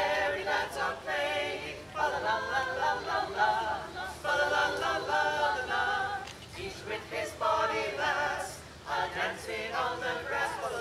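Mixed men's and women's voices singing a cappella in harmony, a Renaissance madrigal, in phrases broken by short pauses.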